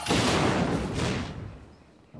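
Cartoon explosion sound effect: a sudden loud blast that dies away over about a second and a half.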